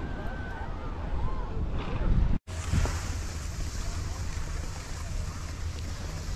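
Wind buffeting the camera microphone while skiing, with the hiss of skis sliding over snow. The sound cuts out for an instant about two and a half seconds in, and the hiss is brighter afterwards.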